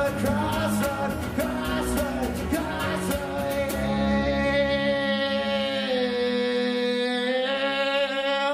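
Live rock song: a man singing with strummed acoustic guitar. The strumming stops about four seconds in and he holds one long final note over a ringing chord.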